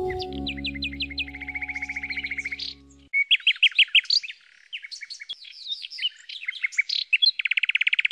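Canary singing: fast rattling trills and runs of whistled notes, over a held musical chord that stops about three seconds in.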